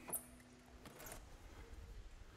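A door latch clicks as an interior door is opened, then a fainter click about a second later, over a quiet room with a faint steady hum.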